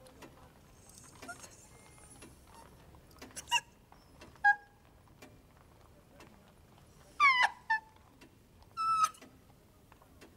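A woman sobbing: four short, high-pitched crying sobs, the longest and loudest about seven seconds in and just before the end.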